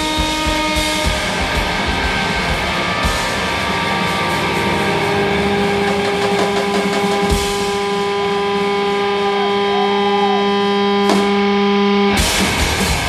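Electric guitar feedback between the bursts of a loud noise punk set: several steady tones held and ringing, swelling in the second half. Drum and cymbal noise sits under the first few seconds, and a single sharp hit comes near the end.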